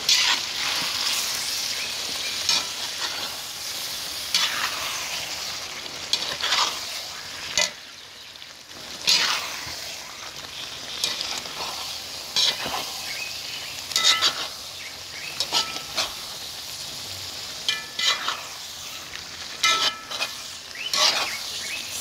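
Thick egusi vegetable soup sizzling in a metal pot while a spatula stirs it, scraping against the pot in repeated strokes, with a short pause about eight seconds in.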